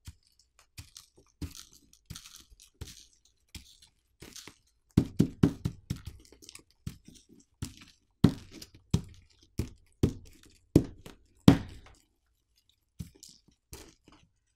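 Sand and gravel ground by hand across a smartphone's glass screen, gritty scraping strokes that grow louder and come about twice a second from about five seconds in. The grit is scratching the Gorilla Glass Victus 2.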